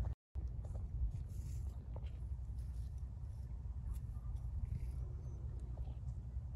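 Steady low rumble with a few faint, light clicks of metal engine parts being handled while a thermostat housing is refitted.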